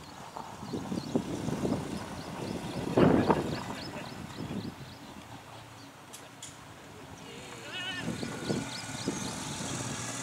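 Voices of cricket players calling out across the field, loudest about three seconds in, with a bird chirping over and over in the background. Two sharp clicks come just after six seconds, and a short warbling whistle near eight seconds.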